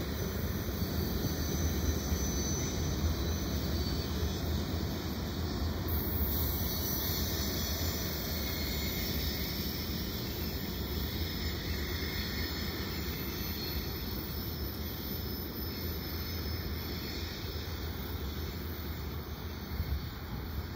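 Norfolk Southern freight train moving away down the track: a steady low rumble that slowly fades.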